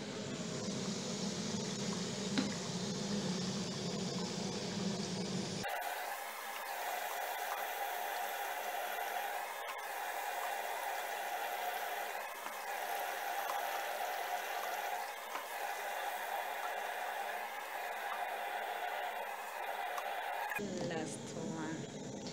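Potatoes frying in hot oil, a steady sizzle. The sound changes abruptly about six seconds in and again near the end.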